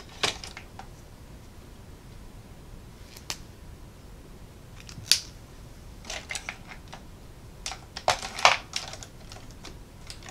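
Small plastic pens clicking and rattling as they are handled and sorted through. There are scattered single clicks, then a busier run of clicks and rattles in the last few seconds.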